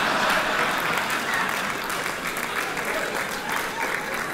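Live audience applauding after a joke, the applause slowly dying down toward the end.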